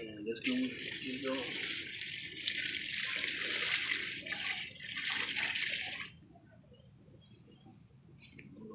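Fish-fertilizer solution poured from a five-gallon plastic bucket onto the soil of a large potted fruit tree, a steady pour that stops abruptly about six seconds in.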